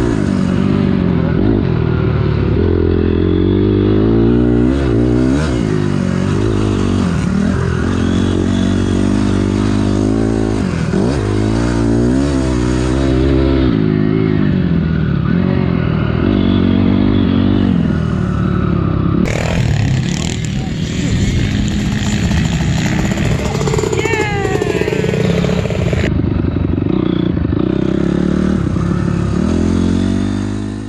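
2006 Honda CRF250R four-stroke single-cylinder dirt bike engine revving up and down repeatedly as it is ridden hard around a motocross track, heard from a helmet camera. A stretch of rushing hiss is laid over it for several seconds past the middle.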